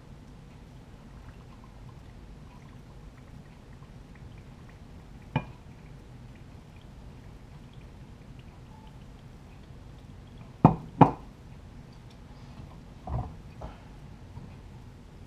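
Salt brine poured slowly from a glass jar into a mason jar packed with peppers for lacto-fermentation, a faint trickle. A sharp glass click about five seconds in, two loud sharp knocks close together near eleven seconds, and a duller knock near the end as the glass jar is set down on the counter.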